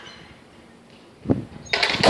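A single knock about a second in, then skateboard wheels rolling on asphalt close by, starting suddenly near the end as a loud, steady rumble.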